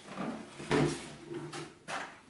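Wooden microphone case being pulled out of a cardboard box: cardboard rubbing and scraping in a few short bursts, the loudest about two-thirds of a second in.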